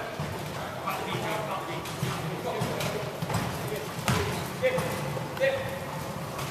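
A basketball bouncing on a wooden sports-hall floor, with several sharp bounces in the second half. Players' voices call out across the court throughout.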